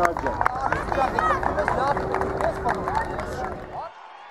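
Overlapping shouts and calls of young footballers, many high-pitched voices at once, over low wind rumble on the microphone. It all cuts off abruptly just before the end.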